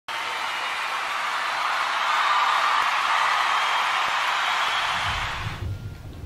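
Audience applauding, dying away about five and a half seconds in, with low bumps near the end as the microphone stand is handled.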